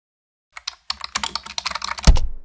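Computer keyboard typing: a rapid run of key clicks begins about half a second in and grows denser toward the end.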